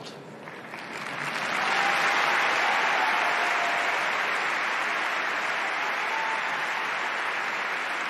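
Large audience applauding. The applause swells over the first two seconds and then holds steady.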